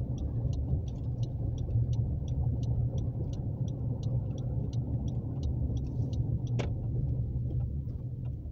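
Low, steady road and engine rumble inside a moving car's cabin. A light, regular ticking runs over it at about three ticks a second, and there is one brief sharp squeak about six and a half seconds in.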